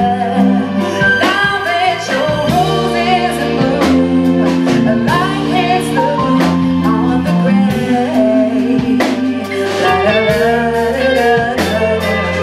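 Female lead vocalist singing a slow pop ballad over a live band: electric guitar, electric bass and drum kit keeping a steady beat.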